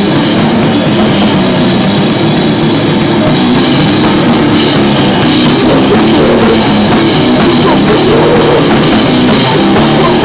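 A live hardcore/grindcore band playing loudly: distorted electric guitar over a full drum kit, with cymbal hits cutting through more strongly from about four seconds in.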